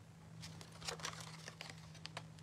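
A sheet of printed paper handled and bent by hand, giving a scatter of faint crinkles and crackles. A steady low hum runs underneath.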